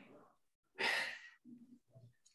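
A person sighing out a short, breathy exhale about a second in, the effortful out-breath of someone exercising, followed by a couple of faint low murmurs.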